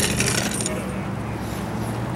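A brief metallic jingling clatter that fades out in the first second, over a steady low hum.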